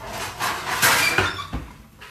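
Kitchen handling noise: a rough scraping and rustling with a couple of knocks around the middle, dying away toward the end.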